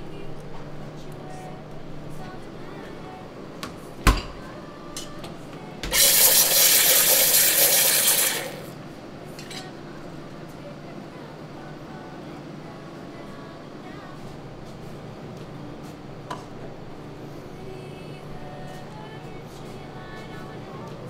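Espresso machine steam wand hissing for about two and a half seconds, starting about six seconds in, as milk is steamed for foam. A single sharp knock comes about four seconds in; otherwise there is a low steady hum.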